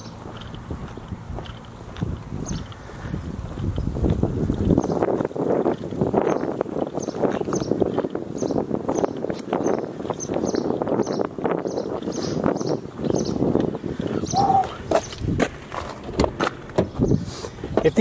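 Footsteps on pavement at a walking pace, about two to three steps a second, under a steady rumble of wind and outdoor noise.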